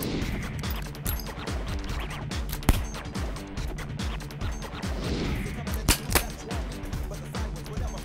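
Background music with a steady beat, over which a fast-draw revolver firing wax bullets goes off: one sharp shot about two and a half seconds in, then two shots in quick succession around six seconds.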